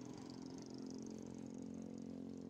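A faint, steady hum of constant pitch.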